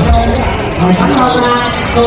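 A voice amplified over loudspeakers in a large hall, with low thumps underneath, heaviest at the start.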